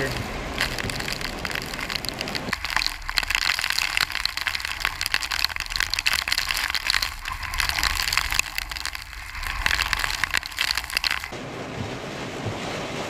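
Heavy rain and severe straight-line wind battering a car: a dense crackle of rain pelting the roof and windshield over a steady low wind rumble.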